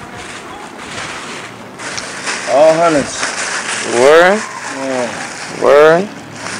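A thin plastic bag crinkles and rustles as it is held open and handled. From about halfway through, a voice calls out three times over it, each call short and loud and rising then falling in pitch.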